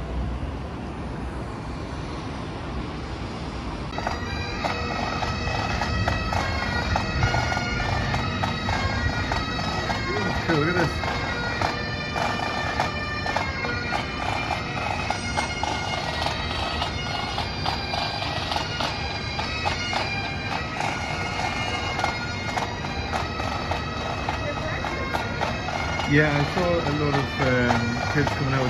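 Bagpipes of a pipe band playing on the street below, a steady drone under the tune, starting about four seconds in over the low hum of the city.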